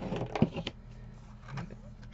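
Cardstock sheets being handled on a tabletop: a few quick paper rustles and clicks in the first second, with one sharp tap about half a second in.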